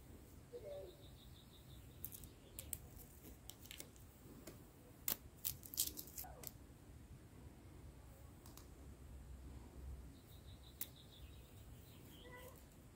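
Protective plastic film being peeled and handled on a new tablet: faint, scattered crackles and ticks, thickest between about two and six and a half seconds in, with a couple of single ticks later.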